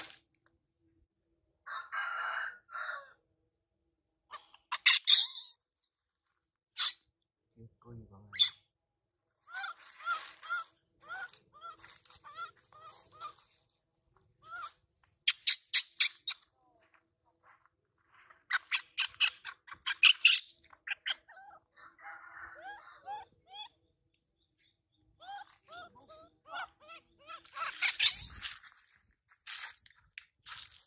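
Animal calls: short chirping cries repeated in quick bursts, with a few runs of sharp, loud pulses.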